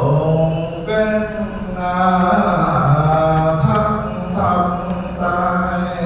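Vietnamese Buddhist chanting by low male voices: long held notes that step between a few pitches, in phrases a second or two long.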